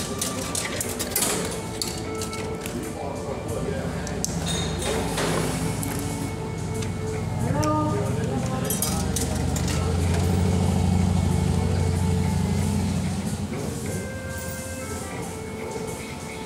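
Electronic music and jingle tones from an Imperia slot machine as it plays, with a few clicks near the start, over background voices.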